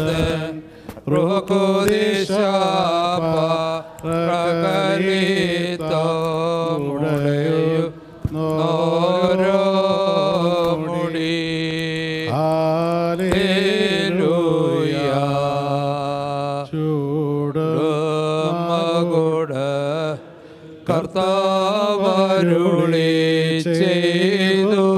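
Men's voices chanting a slow liturgical funeral hymn through a microphone, in long gliding melodic phrases with brief pauses for breath.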